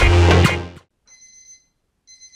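Background music with a beat cuts off under a second in. It is followed by a short, high electronic ringing alert, a 'ting-a-ling' alarm notification tone, of about half a second.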